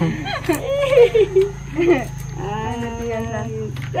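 People's voices laughing and exclaiming, then one long, level drawn-out vocal call about two and a half seconds in.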